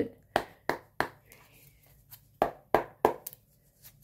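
Tarot deck being shuffled by hand: six sharp card slaps in two sets of three, about a third of a second apart.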